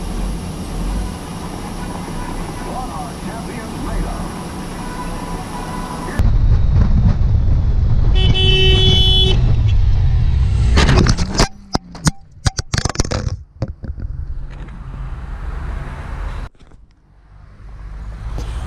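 Truck cab noise at a standstill, then, after about six seconds, the louder rumble of a motorcycle riding at speed, a vehicle horn sounding for about a second, and a run of sharp knocks and scrapes as the motorcycle crashes into a car and goes down.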